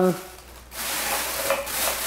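Rubbing and rustling of gloved hands handling objects on the floor, starting about a second in, with a couple of light ticks.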